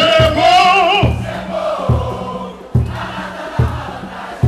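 Live samba-enredo: a male lead voice sings over the sound system for about the first second, then a crowd chorus carries on. Under it runs a steady deep drum beat a little more than once a second.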